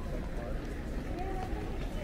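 Airport terminal concourse ambience: a steady low hum of the hall with indistinct voices of passers-by, one of them briefly clearer about a second in.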